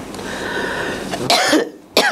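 A man clearing his throat with a drawn-out, breathy sound, then giving one short cough about a second and a half in.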